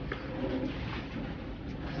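Water poured from a small glass bottle into a plastic cup, trickling steadily.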